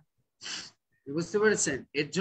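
A short, sharp intake of breath about half a second in, followed by a man's voice resuming speech.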